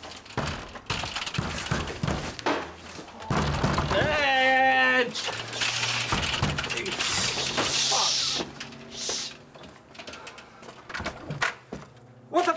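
Knocks and thumps at a front door, then a man's long, drawn-out shout that rises in pitch about four seconds in, followed by loud, excited men's voices.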